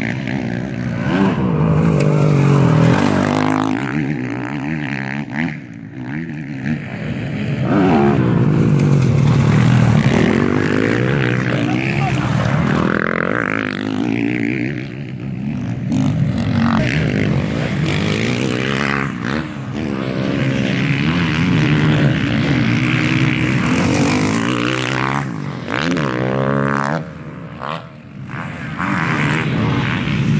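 Motocross race bikes racing past on a dirt track, their engines repeatedly revving up and dropping back as the riders go through the jumps and turns.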